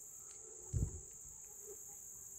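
A steady, high-pitched insect chorus, with one brief low thump about a second in as the insect net is swung through the flowers.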